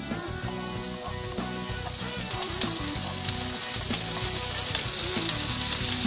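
Oil sizzling steadily in a frying pan as shredded chicken is added to sautéed green and yellow bell peppers, with background music playing.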